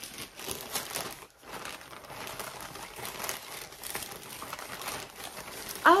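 Crinkly bag or packaging rustling in irregular bursts as items are rummaged through and handled.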